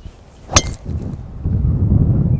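Golf driver striking a teed ball: a single sharp, ringing click about half a second in.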